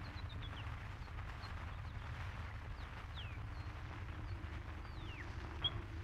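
Faint outdoor sound-effect backdrop in a radio play: scattered short, high bird chirps, some gliding downward, over a steady low rumble.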